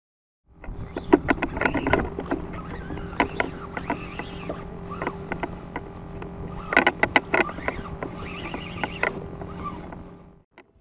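Knocks and clicks of gear and hands against a plastic fishing kayak, over a steady low hum, as a hooked fish is fought on a bent rod. The sound starts about half a second in.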